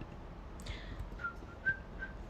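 A person whistling softly to herself: a breathy rush of air, then two short whistled notes, the second a little higher.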